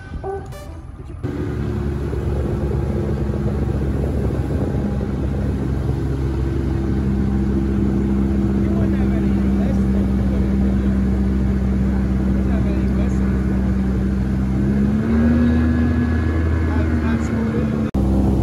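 Outboard motor of a small aluminium boat running steadily under way, a low, even hum. About three-quarters of the way through, its pitch rises a little and the note grows fuller as the throttle opens.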